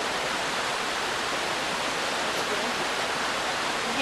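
A steady, even hiss with no distinct events.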